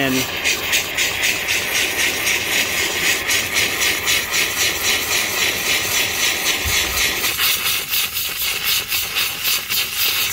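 Handheld steam cleaner on maximum steam, hissing steadily as the nozzle and a stiff wire brush are worked into dried paint caked in car carpet. The hiss swells and dips a few times a second with the strokes.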